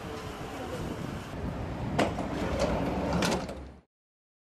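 ZapVan electric shuttle rolling up and stopping, with only a steady low noise from tyres and surroundings and no engine note. A sharp click about two seconds in, a short rattly clatter about a second later, then the sound cuts off abruptly.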